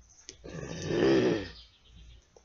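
A woman's long, voiced sigh of frustration, breathed out once for about a second.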